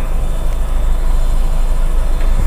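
Mitsubishi L300 van's engine and road noise heard inside the cab as the van pulls away in second gear, a loud steady low rumble.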